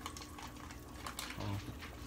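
A few faint, scattered light clicks and taps from kitchen handling, with a soft low bump about one and a half seconds in.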